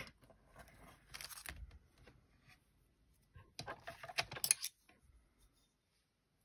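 Clear plastic craft packaging crinkling and rustling while a pack of self-adhesive gem embellishments is searched through. A soft rustle comes about a second in, then a louder run of crisp crinkles and small clicks around four seconds in.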